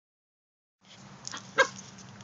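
A pet dog gives one short, sharp bark about a second and a half in, after a few faint clicks.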